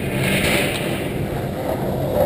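Skateboard wheels rolling on concrete, a steady rough rumble.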